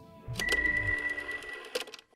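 End-screen logo sound effect: a click with a low thump, then a bright bell-like ring held for about a second and a half, with another click near the end.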